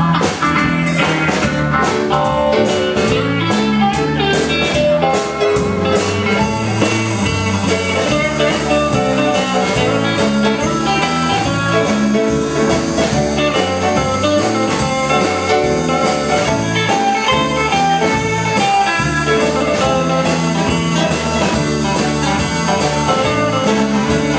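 Live blues band playing the opening of a song: electric guitar, drum kit and saxophone over a steady beat.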